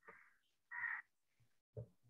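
Two short, harsh bird calls about two-thirds of a second apart, faint, with a brief low sound near the end.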